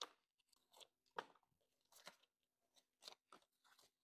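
Near silence broken by a handful of faint, brief crinkles and clicks as hands handle a paper sticky note, polymer banknotes and a clear plastic snap envelope; the clearest comes about a second in.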